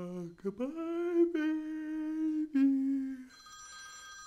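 A voice humming long held notes, the pitch stepping up early on and settling a little lower before it stops about three quarters of the way in. Faint steady high tones carry on behind it.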